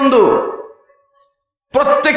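A man preaching into microphones: a drawn-out word trails away with falling pitch. It is followed by a second of complete silence, and his speech starts again near the end.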